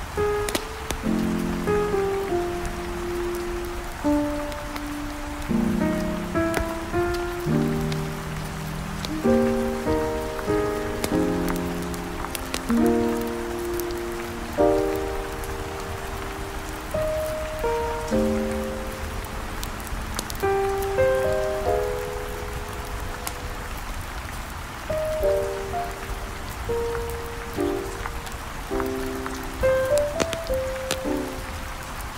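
Steady rain with slow, gentle smooth jazz over it, single held notes and soft chords, and scattered small crackles from a fire.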